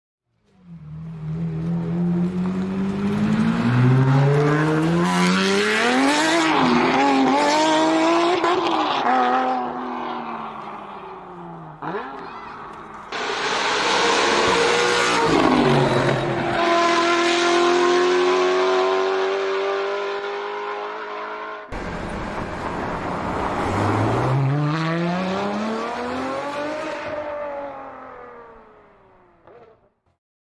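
Lamborghini Aventador V12 engines revving hard, in three clips cut together. In the first and last clips the revs climb in long rising sweeps; in the middle clip the engine holds high revs with a slowly climbing pitch. The sound fades out near the end.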